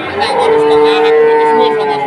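A cow mooing once: one long, steady, loud call lasting most of two seconds.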